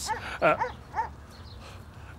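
A dog giving two short barks about half a second apart.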